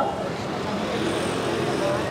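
Steady street background of road traffic noise, with faint voices from a surrounding crowd and no single voice standing out.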